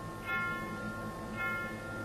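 Quiet orchestral music: a held chord with bell-like notes struck about once a second.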